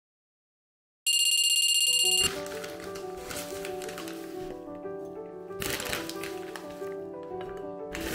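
A digital alarm clock beeping rapidly and high-pitched for about a second, after a second of silence, then background music with held notes, with a short noisy burst a little past the middle.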